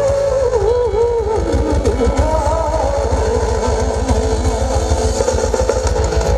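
Live band music: drums, bass and electric guitar keep a steady beat. Over it a singer's held, wavering notes with wide vibrato carry the melody for the first few seconds, then the band plays on without the voice.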